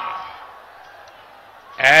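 A man speaking through a rally PA: a drawn-out word trails off and fades at the start, then a pause with only faint background noise, then speech resumes near the end.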